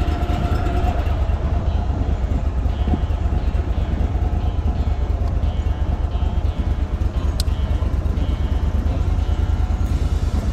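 Outboard motor on a small aluminium jon boat running steadily under way, a constant low rumble.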